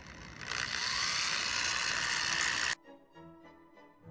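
Corded electric drill running with its twist bit boring into a leather-hard stoneware vase, a steady high whine for about two seconds that cuts off suddenly. Soft background music follows near the end.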